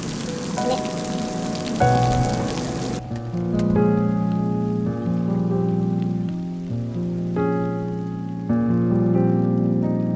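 Heavy rain falling, a dense steady hiss, under soft background music. About three seconds in the rain sound cuts off suddenly, and sustained keyboard-like music chords carry on alone.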